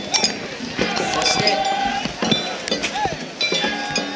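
Metal being struck over and over, with sharp clanging hits that ring, and voices calling out over them.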